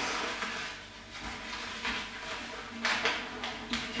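A paper coffee filter being folded and creased by hand: soft rustling and crinkling of paper, with a few sharper crinkles, the clearest about three seconds in.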